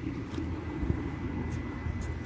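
Steady low rumble of motor vehicles, with one short knock a little before halfway as cardboard flower cartons are handled.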